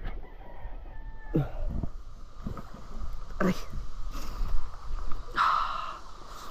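A rooster crowing briefly near the end, over a steady low rumble and a few short voice sounds.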